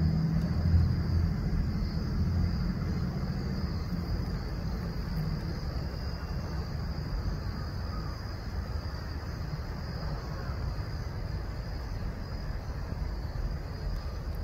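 Steady outdoor ambience: a constant high insect drone, crickets or similar, over a low rumble that is strongest in the first few seconds.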